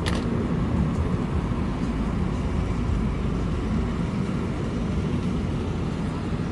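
Steady low rumble of a car's engine and road noise, with a single short click right at the start.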